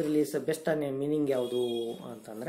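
A man speaking, lecturing continuously in a steady voice.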